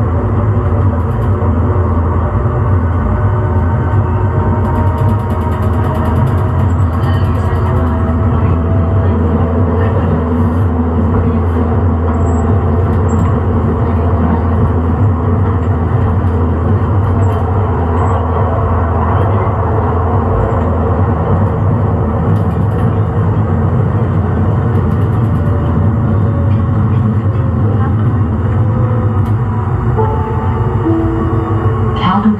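Siemens S200 light rail vehicle in motion: a loud, steady rumble over a low hum, with faint whining tones that slide slowly in pitch.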